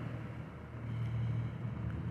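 Quiet, steady low hum of background noise, with no distinct events.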